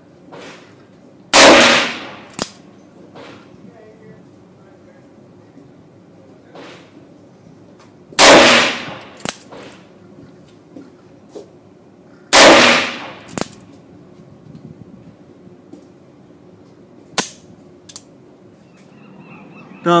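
Three shots from a Ruger Blackhawk Bisley single-action revolver in .41 Magnum, each a loud report with a ringing echo, spaced about seven and then four seconds apart. Fainter sharp cracks and clicks fall between the shots.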